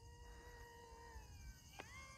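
Faint whine of the XK A100 J-11's twin brushed motors as the foam RC jet flies far off, sagging in pitch a little past the middle as the throttle changes and rising again near the end, with a light click near the end.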